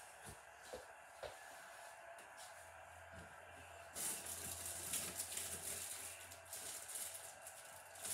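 Distant rustling of snack bags and packaging being rummaged through at a shelf. It starts suddenly about halfway in and continues as a fluttering crinkle. A few light knocks come earlier.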